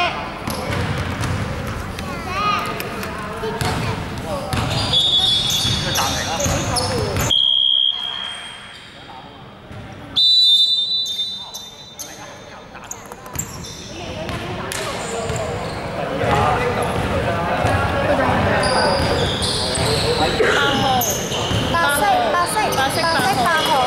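Basketball game in a large indoor sports hall: a ball bouncing on the hardwood court, players' voices, and a loud, sudden referee's whistle blast about ten seconds in.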